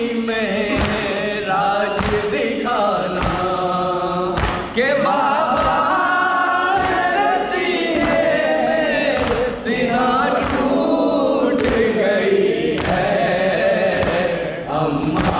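Group of male mourners chanting a Shia lament in unison, led by an amplified voice, while beating their chests in a steady rhythm (matam). The beat sounds as sharp slaps under the singing.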